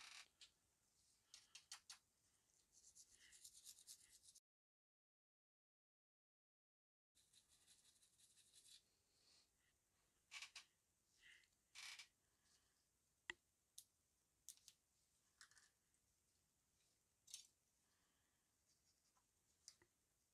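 Faint, intermittent scrubbing and scraping at a small blackened brass photoetch part to work off a stubborn crust, with a few small clicks and taps. A few seconds of dead silence fall about four seconds in.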